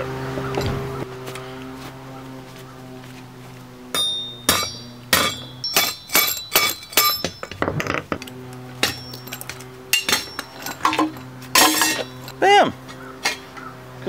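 Hammer striking copper pipe in a quick, irregular run of metallic clanks and clinks, starting about four seconds in. The soft copper is being battered through to free the brass fittings for scrap. Background music with steady held tones plays underneath.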